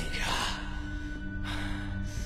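Film score holding low, steady sustained notes, with a short breathy gasp of air in the first half second.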